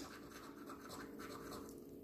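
Faint scratching of a coin rubbing the scratch-off coating from a paper scratch card, uncovering a number.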